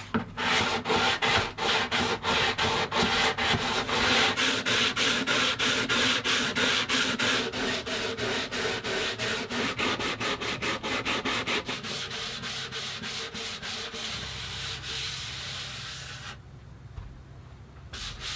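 Sandpaper on a hand sanding block rubbed back and forth along the wooden sides of an acoustic guitar body, in quick, even strokes about four a second. The sides are being sanded smooth and true before the binding channels are routed. The strokes grow fainter after about twelve seconds and stop about sixteen seconds in.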